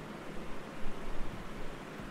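A few faint keyboard key presses over a steady background hiss.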